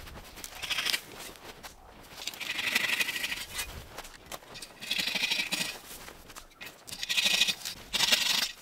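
A hand pruning saw cutting the lower branches of a spruce: a few slow rasping strokes, each about a second long, a second or two apart.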